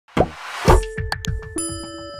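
TV channel logo jingle: two deep hits, a quick run of short popping notes, then a bright chime chord that rings on from about one and a half seconds in.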